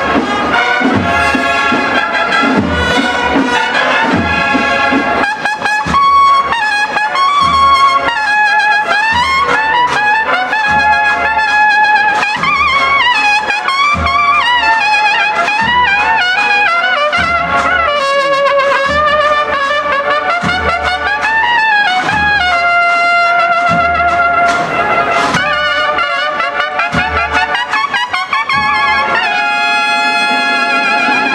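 A brass marching band of trumpets plays a processional march, with a melody that moves up and down over a steady low beat that comes about once a second.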